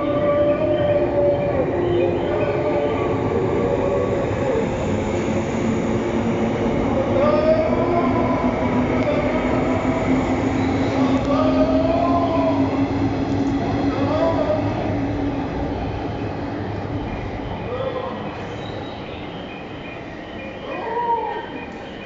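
JR 185 series electric train pulling out of a station: its motor tone rises slowly in pitch as it accelerates past, over steady wheel and rail noise, then fades as the last cars leave.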